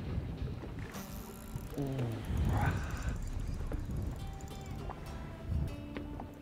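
Wind rumbling on the microphone and water lapping against a boat hull, with faint background music.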